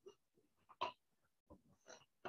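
Near silence: room tone, with one short faint sound just under a second in and two fainter ones near the end.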